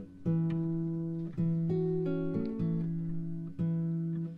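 Acoustic guitar playing a slow series of chords, a new one struck about every second and each left to ring.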